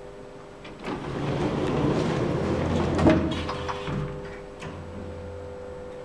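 Automatic sliding doors of a Kone Monospace lift running, building for about two seconds and ending in a sharp knock about three seconds in, as the door panels meet. A steady low hum sounds before and after.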